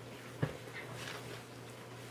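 A person getting up off a carpeted floor: one sharp knock about half a second in, then faint rustling of movement, over a low steady hum.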